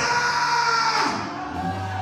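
Congregation voices raised together in a loud cry of praise over church music. The cry is strongest at the start and fades after about a second into the music.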